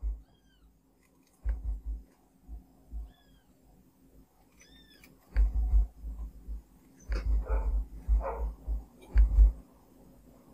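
Several short, high-pitched animal calls, each rising and falling, with low thuds and knocks in between that are loudest in the second half.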